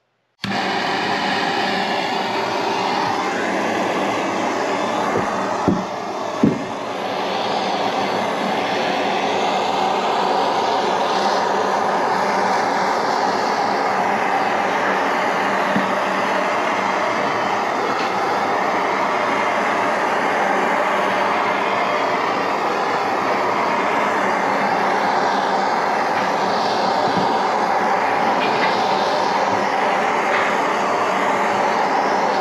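Handheld gas torch burning with a steady hiss as its flame chars the pine stair steps, with two short knocks about six seconds in.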